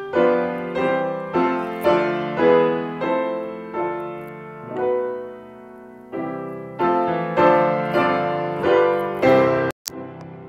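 Grand piano playing a medley of hymns and gospel choruses, chords struck about twice a second and left to ring, with a softer held chord around the middle. The sound cuts out for an instant near the end.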